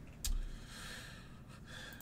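A single dull thump about a quarter second in, then a man's breathy exhale, like a sigh, close to the microphone.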